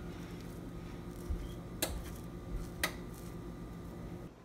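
Metal fork scraping the soft roasted flesh of a spaghetti squash half into strands, with two sharp clicks about a second apart as the fork knocks against the shell or the pan. A steady low hum runs underneath.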